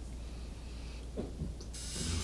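Steady low background hum, with a short creak a little over a second in and a brief rustle near the end as a seated person moves, bringing the palms together and bowing.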